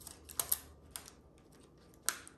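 A few small, sharp plastic clicks, two close together about half a second in and a softer one a moment later, from a midline catheter's hub being pressed into a StatLock securement device by gloved hands.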